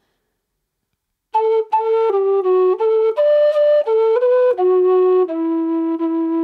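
Low whistle playing a slow phrase of a march in E minor: a run of about a dozen separate notes that begins about a second in on an A and ends on a long held low note.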